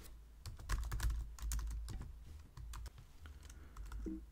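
Typing on a computer keyboard: a quick run of keystrokes over about three seconds as a short line of text is entered.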